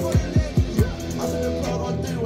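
Red electric guitar played over a hip-hop backing beat, with deep bass hits that slide down in pitch, three of them in the first second.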